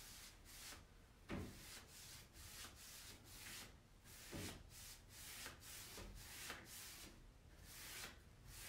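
Faint swishing of a paintbrush working paint onto a wooden wardrobe, in quick back-and-forth strokes about two a second.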